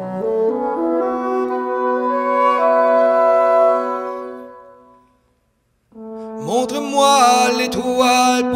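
Live band music: a sustained chord led by French horn, with bassoon, is held and then fades out to a brief silence about five seconds in. Just under a second later the music comes back in with sliding, wavering notes.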